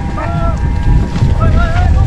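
Wind rumbling on the microphone on an open hilltop, with a faint steady high tone and a couple of short wavering tones above it.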